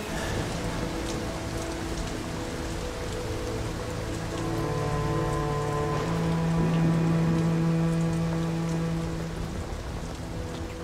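Heavy rain falling steadily, with soft, long-held music notes underneath.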